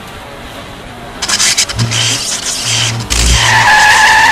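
Sports car sound effects: loud bursts of engine and road noise, then tyres squealing in a long skid over the last second or so.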